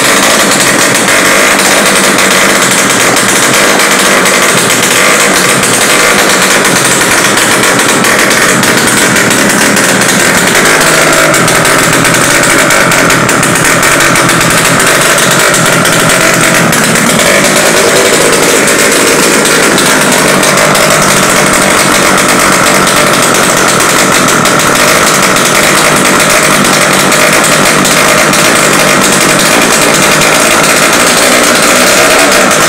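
Custom 300 cc two-cylinder Yamaha RX King two-stroke engine, built on RX King crankcases with Kawasaki Ninja cylinder blocks and heads, running loud and steady, heard close up.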